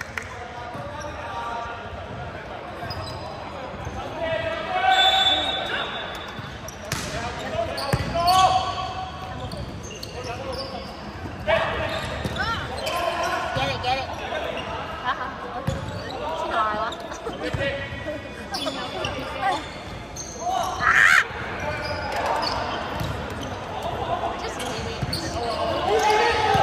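An indoor volleyball rally in an echoing sports hall: players shout and call to each other, and the ball is struck with sharp smacks several times.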